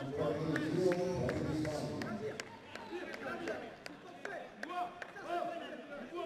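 Live mini-football game sound: men's voices calling out over the play, with a scatter of sharp ball kicks and knocks.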